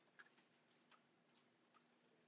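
Near silence: room tone with about three faint, short clicks.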